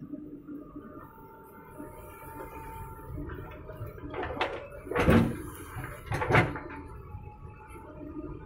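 JCB 3DX backhoe loader's diesel engine running steadily under hydraulic load, then two loud rushing thuds about five and six and a half seconds in as a bucketload of soil is dumped into a tractor trolley.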